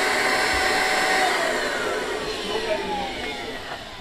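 Electric air pump inflating an inflatable deck, its motor running with a steady whine, then winding down from about a second in, its pitch falling as it slows.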